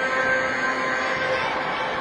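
Steady background hubbub of a crowded sports hall, with a faint held tone running through it.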